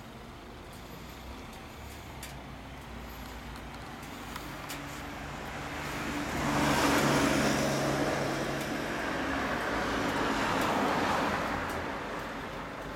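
A road vehicle passing by, its engine hum and road noise swelling to loudest about seven seconds in and fading away near the end.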